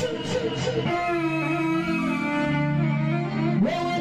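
Live Moroccan chaabi band music. A wavering sung line in the first second gives way to long held instrumental notes, and a rising glide brings the full rhythmic band back in near the end.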